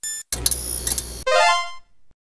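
Synthesized sound effects for an animated logo: a short electronic beep, a burst of noisy electronic hits, then a quick run of blips climbing in pitch.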